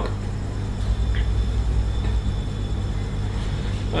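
Steady low hum with a faint background hiss, the recording's room or microphone noise, with a faint brief tick about a second in.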